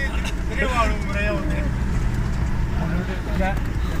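Steady low rumble of a car's engine and tyres, heard from inside the cabin as it drives along a dirt road, with a voice singing over it in the first half and again near the end.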